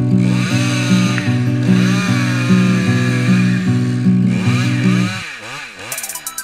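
Petrol chainsaw cutting through a horse chestnut limb, its engine note wavering under load, beneath background music with a pulsing bass line that drops out about five seconds in.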